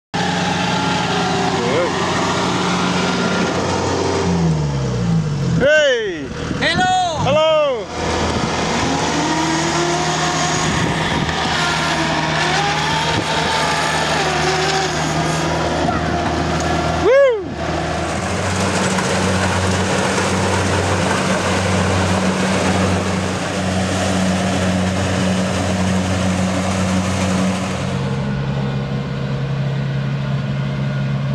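Kubota DC-70 Plus rice combine harvester's engine running steadily under load, with a few loud rising-and-falling sweeps over it, the loudest about 17 seconds in. Near the end the engine note drops to a lower, steadier hum.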